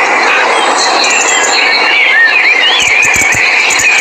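A loud, steady rushing noise like wind. A few short, high, chirping calls come in the middle, and a few low thuds come about three seconds in.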